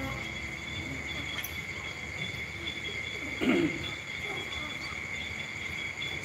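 Steady high-pitched chorus of night insects, two unbroken shrill tones. About three and a half seconds in, a brief falling vocal sound.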